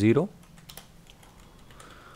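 Computer keyboard typing: a few irregular, light keystrokes.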